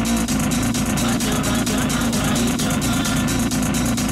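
House/techno DJ set in a breakdown. The kick drum drops out, leaving a steady buzzing synth drone under fast hi-hat ticks.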